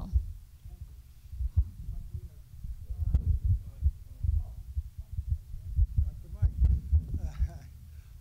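Handheld microphone handling noise: irregular low thumps and rumbles as the mic is carried and handed to an audience member. Faint voices murmur in the room in between.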